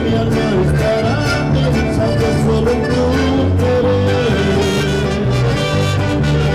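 Live mariachi band playing a song: accordion, keyboard, guitar and vihuela over a steady, repeating bass beat.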